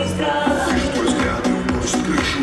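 Live pop music played through a concert PA, with a steady beat and a singing voice.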